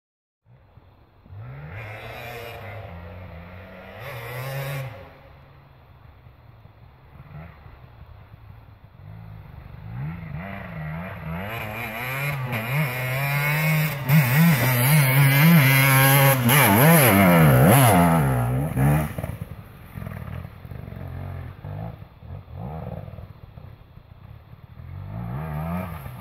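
Enduro dirt bike engine revving hard as it climbs a rough hillside, its pitch rising and falling with the throttle and gear changes. It grows louder as the bike approaches, is loudest about halfway through, drops off, then builds again near the end.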